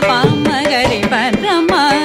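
Carnatic classical music in raga Purvikalyani: a woman singing fast phrases full of sliding, oscillating notes, with violin following the voice and mridangam strokes.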